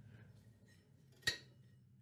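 Drive belt being worked off a riding mower's raised idler pulley: faint handling sounds, with one short light metallic clink a little over a second in.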